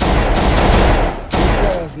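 A handgun firing a rapid volley, the shots running together for over a second, with one more shot just after before it dies away.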